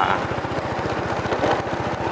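Motorbike engine running steadily while riding, a fast even beat under road and wind noise.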